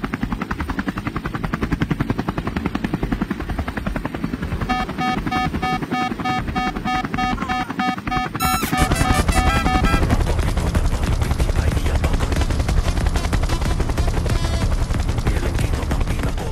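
Helicopter rotor and turbine heard from inside the cabin: a fast, even blade chop. From about five to ten seconds a pulsed beeping tone sounds over it, and the chop grows louder about nine seconds in.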